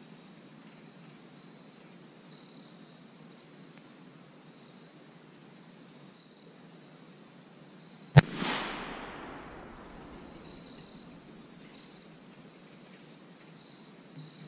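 A single very loud rifle shot about eight seconds in, its report rolling away through the woods and fading over about two seconds.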